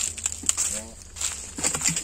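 Faint, brief murmured speech over a steady outdoor background of high hiss and low rumble, with a sharp click about half a second in.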